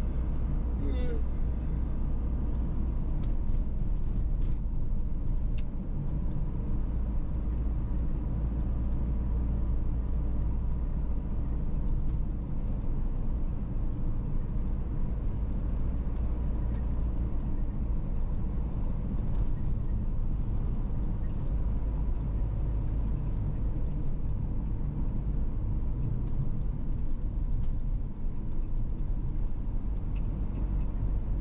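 Steady low rumble of a car on the move, heard from inside the cabin: engine and tyre noise on an asphalt road.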